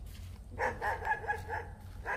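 A dog barking in a quick run of about five short barks, then one more near the end.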